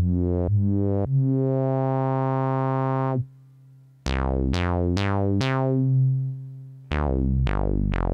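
Low sawtooth notes from a modular synthesizer played through a Synthesizers.com Q107a state-variable filter with the resonance turned up. First comes a long note that slowly brightens as the cutoff rises. After a short gap comes a run of short notes, each starting bright and closing down quickly as the cutoff sweeps down.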